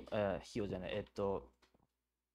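A person speaking in a few short phrases, which stop about two-thirds of the way through.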